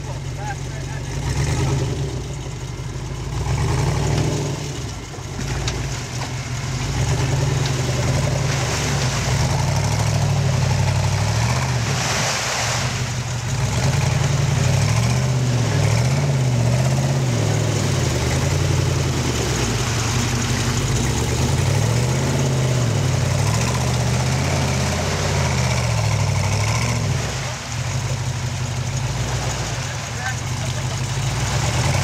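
Off-road challenge truck's engine revving up and down under load as it drives through mud, its pitch rising and falling over and over.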